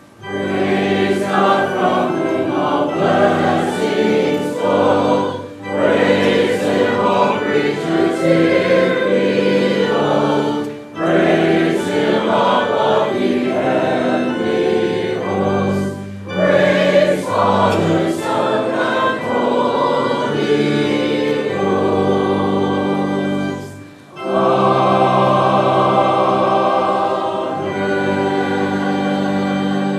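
Church choir singing a short sung response with organ accompaniment, in several phrases separated by brief breaks and ending on a long held chord.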